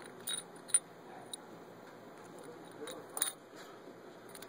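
A few light metallic clicks of small steel hardware being handled at a wheel hub while a pin is fitted through a hole in the stud, the sharpest about three-quarters of a second in and another near the three-second mark.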